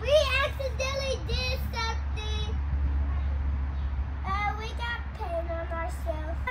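A young girl singing without clear words in short phrases, with a few held notes near the end, over a steady low hum.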